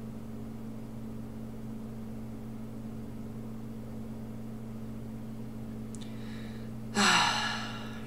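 A steady low hum, then about seven seconds in one short, loud, breathy gasp from a person that fades within a second.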